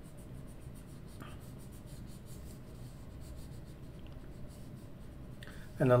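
Coloured pencil rubbing across paper in short shading strokes. The paper lies on a soft party mat rather than a hard table.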